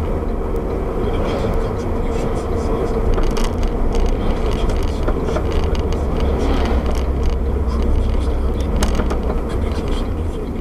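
Road and engine noise of a moving car heard inside its cabin: a steady low rumble with occasional light clicks.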